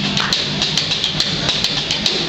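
Live rock band in a loud, noisy stretch of the song: distorted electric guitar wash with little clear pitch, and a run of sharp cymbal ticks about four a second.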